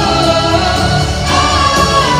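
Live pop ballad heard from the audience in a large arena: a singer with band accompaniment, a long high note held from about halfway through.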